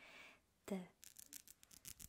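A breathy whisper and a short murmured syllable, then about a second of rapid faint clicking and scratching as fingernails are rubbed and tapped against each other close to the microphone.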